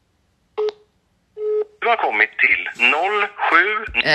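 Two short beeps of a telephone line tone, both at the same pitch and a little under a second apart, as an unanswered phone call ends. A woman's voice begins talking right after.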